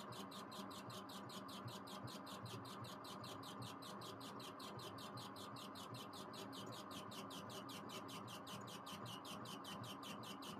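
Laser engraver's stepper-driven head rastering back and forth while engraving, with an even, rapid chirping about five or six times a second over a steady hum.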